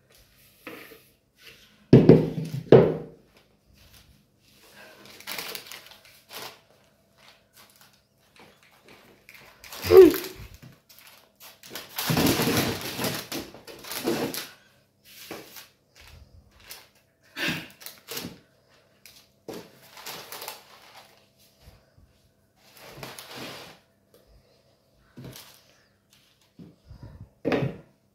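Kitchen handling sounds while sponge cake batter is spread in parchment-lined baking tins with a spatula. There are two heavy knocks about two and three seconds in and a sharp knock about ten seconds in, followed by a few seconds of scraping.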